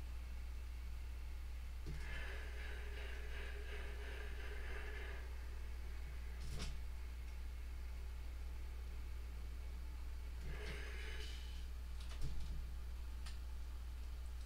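A hand iron working over a quilt block on an ironing board: two soft hissing stretches, one of about three seconds and a shorter one later, with a single click in the middle. A steady low hum lies underneath.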